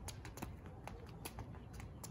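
Quick, light footsteps of sneakers tapping on a concrete driveway during a speed-ladder footwork drill: a rapid, uneven run of faint taps.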